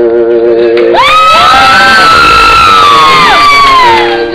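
A chord held on an electronic keyboard, then from about a second in several high voices whooping and cheering together over it: each call slides up, holds, and falls away near the end.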